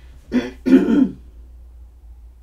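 A woman clearing her throat: two short rasps in quick succession, the second longer and louder.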